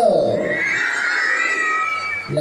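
A person's voice shrieking: a falling shout at the start, then a high, drawn-out, wavering shriek held for over a second, like a cheer from the crowd.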